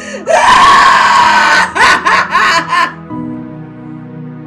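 A woman wailing in distress: one long, loud cry, then about four short sobbing cries that stop about three seconds in, over soft, sad background music.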